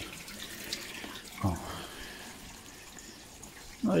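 Pond water pouring steadily from a pipe outlet onto the screen of a sieve filter box, a constant splashing stream.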